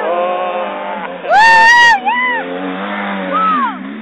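Quad (ATV) engine running with a steady drone as it comes down a dirt hill. Over it come loud, high-pitched shouts: one long one about a second and a half in, a short one right after, and a falling one near the end.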